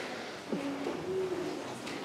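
A drawn-out, hooting "ooh" from a voice in an audience, starting about half a second in, dipping in pitch and then holding, with other faint voices behind it.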